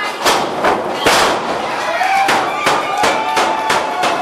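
Sharp bangs of bodies hitting a wrestling ring's canvas, one loud one about a second in and several more later, with people shouting over them.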